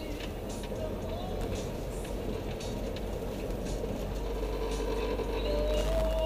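Steady low road and engine rumble heard from inside the cabin of a moving vehicle.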